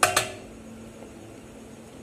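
Two quick, light clinks of a small hard object at the very start, with a brief ring, then a faint steady hum.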